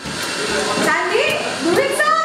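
Voices exclaiming over a steady hiss of background noise, the voices coming in about half a second in.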